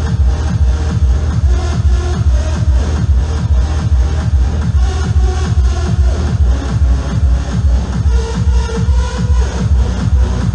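Hard trance played loud over a club sound system. A fast, steady four-on-the-floor kick drum pounds beneath synth melody lines.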